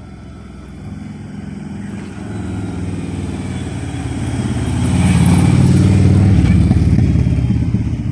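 A motorcycle engine approaching and passing close by, growing steadily louder from about a second in and loudest from about five to seven seconds in.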